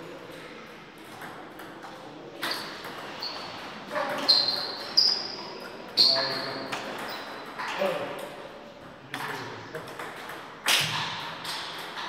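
Table tennis ball hitting the rackets and the table during a rally: a string of sharp pings, each with a short high ring, about half a second to a second apart, mostly in the middle of the stretch.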